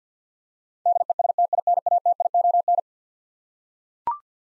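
Morse code sidetone keyed at 50 words per minute, a single pitch in rapid short and long beeps, sending the repeat of the word "destination" for about two seconds starting about a second in.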